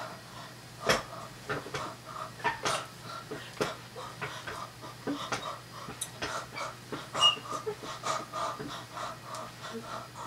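A boy laughing breathlessly in short, panting bursts. A few sharp knocks stand out, the loudest about a second in and about seven seconds in.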